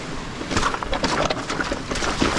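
E-mountain bike riding down a rocky, wet trail: the tyres clatter over stones and through shallow water, with frequent knocks and rattles from the bike, over the rumble of wind on the camera.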